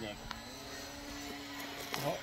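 Radio-controlled model airplanes flying overhead: a steady motor hum that steps up slightly in pitch near the start and then holds.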